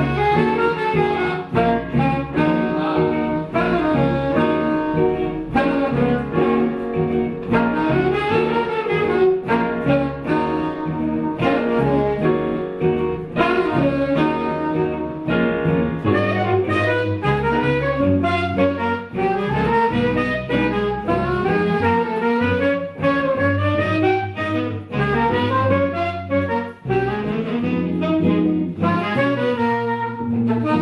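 Small jazz combo playing a tune: saxophones carrying the melody over electric bass, archtop electric guitar and digital piano.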